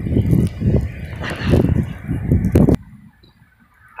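Wind buffeting a phone's microphone in a snowstorm, a gusty low rumble with a few clicks, cut off abruptly about three quarters of the way in and followed by a much quieter stretch.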